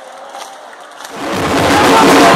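A stadium crowd of football supporters chanting, quiet at first; a little past a second in, a much louder massed chant swells in and takes over.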